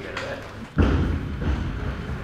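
A sudden heavy thud a little under a second in, followed by a continuing low rumble with voices.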